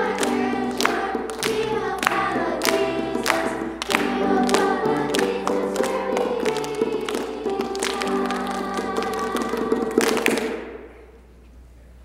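Children's choir singing a song with a steady beat, which ends about ten seconds in with a final hit and the last note fading away.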